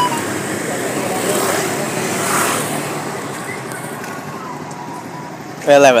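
Motorbike riding along a street: engine running with road and wind noise, swelling around two seconds in and then easing off. A voice starts just before the end.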